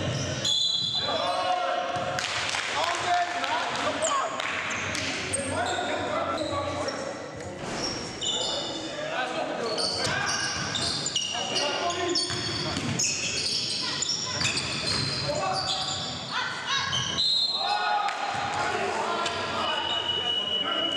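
Live sound of an indoor basketball game: a basketball bouncing on a hardwood court, with players' shouts and calls echoing in the gymnasium.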